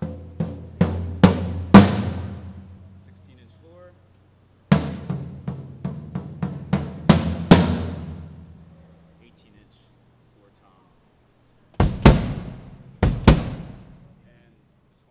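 Toms of a Ludwig stainless steel drum kit played in short runs of hits, each stroke ringing on with a steady drum tone that fades over a couple of seconds. After a pause, two heavier clusters of hits come near the end.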